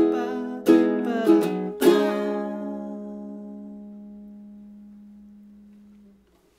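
Two ukuleles strumming four last chords, ending on a final chord that rings and slowly dies away over about four seconds.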